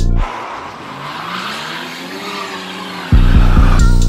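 The hip-hop beat drops out for about three seconds and a car sound effect plays in the break: an engine revving up over a hiss of tyre noise. The full beat with heavy bass comes back in near the end.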